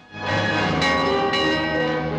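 A large bronze tower bell ringing in its wooden belfry frame, struck about three times in quick succession, each strike ringing on over the last.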